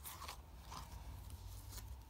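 Faint rustling and scraping of a cardboard scratchcard being handled and slid across the table.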